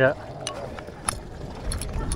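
A few light, sharp clicks and knocks from a mooring line and its fittings being handled on a boat deck, over a low steady rumble.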